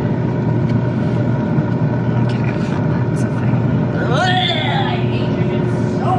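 Countertop air fryer running, a steady fan hum.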